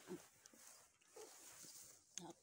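Near silence, with a few faint short sounds about a second in.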